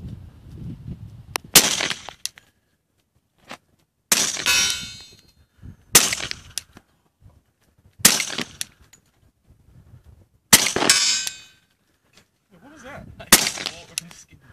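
Six suppressed shots from a .45 ACP Glock 21 pistol fitted with a Silencerco Osprey suppressor, slow fire about two to three seconds apart. Each shot is a sharp crack with a short ringing tail.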